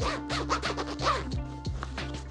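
A zipper on a small sewn fabric pouch being worked open in short scratchy strokes, with fabric rustling from the handled bag, over background music.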